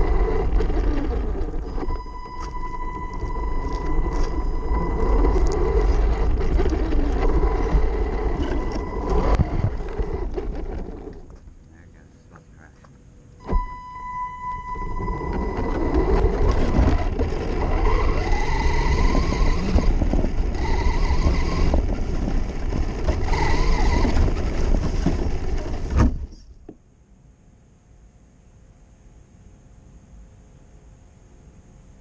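Onboard sound of an electric RC truck driving over rough ground: rumbling and rattling of the chassis with a steady high motor whine. It pauses for about two seconds a little before the middle, starts again with a click, and stops with a sharp knock near the end.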